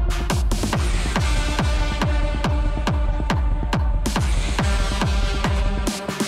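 Electronic dance music from a DJ set over a festival sound system. A steady four-on-the-floor kick drum lands about twice a second under sustained synth chords. The bass drops out right at the end.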